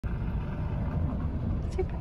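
A steady low rumble, with a voice starting to speak near the end.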